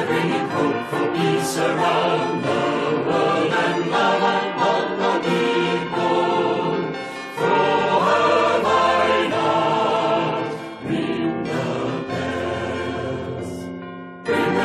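Choral music: a choir singing in continuous phrases, with the sound easing off briefly about seven and eleven seconds in before swelling again.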